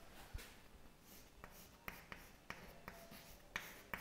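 Chalk writing on a chalkboard: faint, short scratches and taps, about half a dozen strokes spread through.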